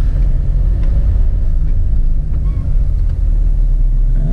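Steady low rumble of a car driving slowly, heard from inside the cabin: engine and road noise.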